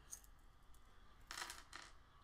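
Near silence with faint handling noises: a few light clicks, then a short scraping rustle about a second and a half in, as a tattoo machine and its parts are handled.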